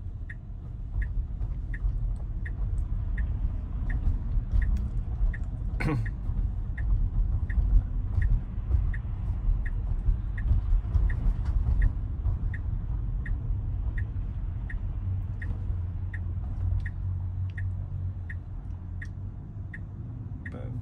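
Tesla turn signal ticking steadily, about two ticks a second, over low road rumble inside the car's cabin. One sharp knock about six seconds in.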